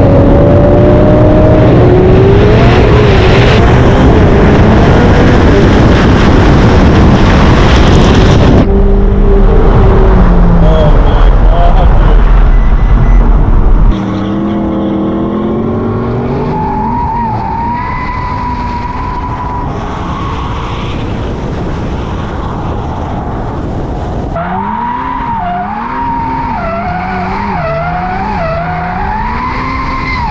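Ferrari 488 Pista's twin-turbo V8 revving hard through drifts, with tyre squeal and heavy wind noise on the car-mounted microphone. About halfway through the sound drops suddenly to a quieter stretch, and near the end the revs rise and fall over and over as the car is held in a slide.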